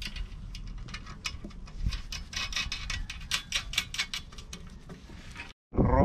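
Quick run of light metallic clicks and ticks as a nut is run down onto a bolt through an aluminium mounting bracket with a small wrench, thickest in the middle; it cuts off abruptly near the end.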